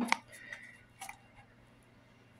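A few small metal clicks from an Allen key working the folding-mechanism bolts of an electric scooter as they are tightened, the loudest right at the start and another about a second in.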